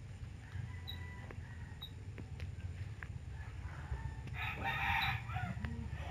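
A rooster crowing faintly in the background, one call about a second long near the end, over a low steady hum.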